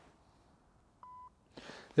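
A single short electronic beep, one steady tone, about a second in, from the tablet running the Capto putting-sensor system as it registers the putting stroke; otherwise near silence.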